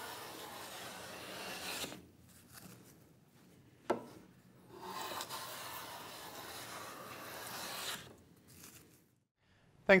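Hand plane taking two long strokes along the edge of a wooden board, each a steady shaving hiss of two to three seconds, with a short knock between them.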